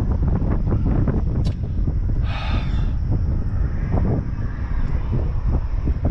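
Wind buffeting the microphone as a steady, ragged low rumble, with a brief hiss about two and a half seconds in.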